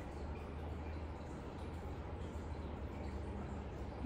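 Quiet room tone with a steady low hum and no distinct events.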